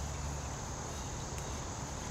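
Insects trilling in the woods: a steady, even, high-pitched drone, over a low steady rumble of outdoor background noise.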